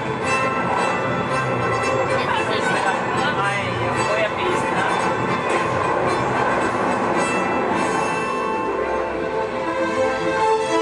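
Orchestral ride soundtrack music playing in a train-compartment ride, over a steady rumble like a rail carriage, with indistinct voices in the middle of the stretch.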